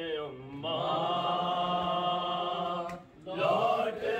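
Unaccompanied male voices chanting an Urdu noha, a Shia mourning lament, in long held notes. The chant breaks off briefly about half a second in and again near the three-second mark before it resumes.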